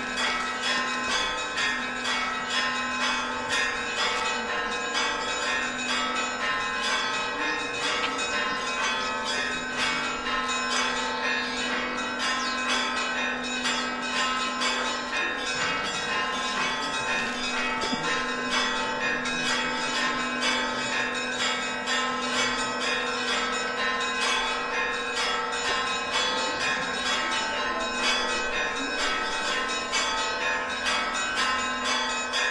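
Church bells ringing continuously, several bells of different pitches struck in quick succession, their tones overlapping and sustaining.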